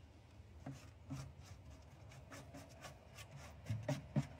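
A hand stirring and rubbing damp mammoth clover seed in a plastic bucket: faint, irregular scraping and rubbing against the plastic. The seed is too wet and clumps together.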